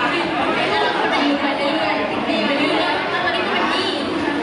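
Speech only: voices talking over microphones and a PA in a large hall, at times overlapping into chatter.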